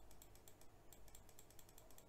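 Near silence with faint, rapid, irregular clicking from a computer being operated while a dotted line is drawn on screen.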